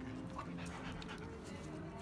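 A dog panting and licking, with short wet clicks, over background instrumental music with held low notes.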